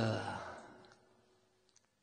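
A man's held, sigh-like voice trailing away during the first half second, followed by quiet room tone with two faint soft clicks near the end.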